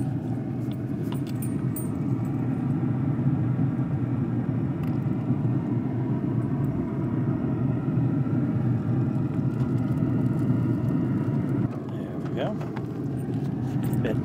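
Steady low hum from a Z Grills pellet grill's fan and firebox running during a cook, with no clear breaks.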